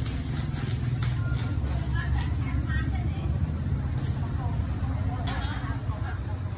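Steady low rumble, with faint voices of people talking in the background and a few light clicks.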